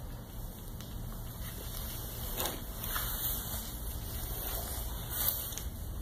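A cat eating from a small metal bowl, with a few faint clicks from the bowl over a steady low hum.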